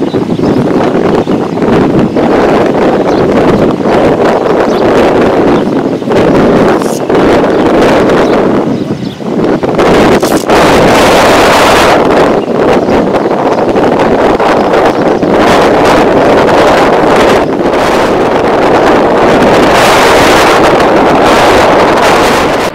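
Strong wind buffeting the microphone: a loud, dense rushing noise with gusts, easing briefly about nine seconds in.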